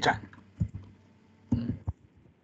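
Computer keyboard keystrokes: a few short clicks in two small clusters, typing a word in pinyin.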